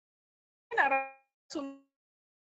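A woman's voice over a video call: two short voiced syllables about a second apart, with dead digital silence before them.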